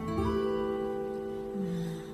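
Live acoustic guitar playing a slow introduction: a chord is plucked at the start and left to ring, and a lower note is added near the end.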